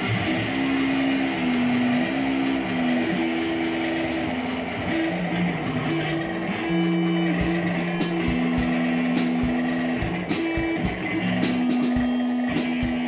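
Live indie noise-rock band: electric guitar plays held notes that step between pitches over a noisy, distorted wash. Drums come in a little past halfway, with sharp hits and cymbal crashes.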